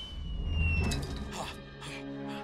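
Cartoon sound effect: a thin whistle gliding steadily downward in pitch over a low rumble, cutting off about a second in, as the rope and grappling hook drop from the airship; soundtrack music follows with held notes.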